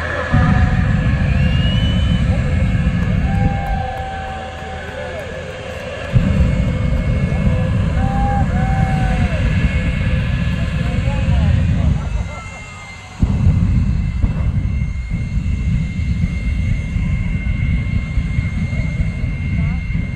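Jet-powered drag car firing its afterburner in three long blasts of deep rumble, each starting abruptly: just after the start, about six seconds in and about thirteen seconds in. Crowd voices run underneath.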